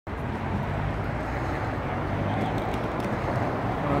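Steady low rumble of city street traffic, an even background noise with no distinct events.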